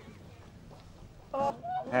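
Low background for over a second, then a man's voice near the end: a short vocal sound, followed by a drawn-out call whose pitch wavers.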